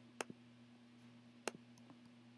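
Faint computer mouse clicks: two sharper ones about a quarter second and a second and a half in, each followed by a lighter one, over a low steady hum.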